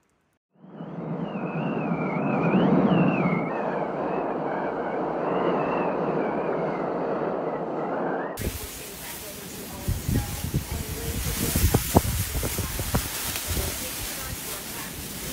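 Wind blowing during a snowstorm: a steady rush with a faint wavering high whistle. About eight seconds in, the clip cuts to a brighter hiss of wind, with gusts buffeting the microphone.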